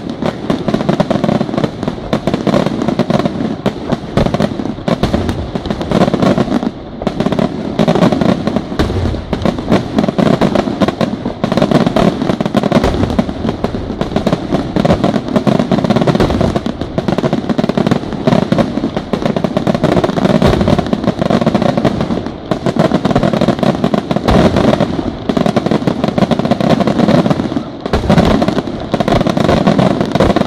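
Aerial firework shells bursting in a dense, almost unbroken barrage of bangs and crackle from a professional display. There are brief lulls about seven, twenty-two and twenty-eight seconds in.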